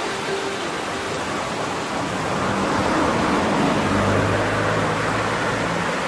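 A steady rushing noise with a faint low hum underneath, growing a little louder partway through.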